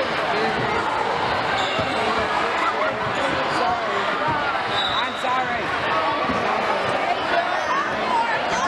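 Many overlapping voices chattering in a school gym, with basketballs bouncing on the court floor among them.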